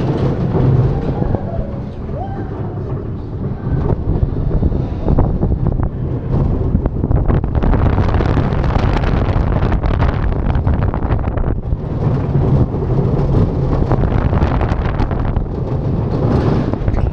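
Mack Rides spinning roller coaster car running along steel track. The wheels rumble steadily, and rattling and clacking grow busier from about a third of the way in as the car picks up speed. Wind buffets the onboard microphone.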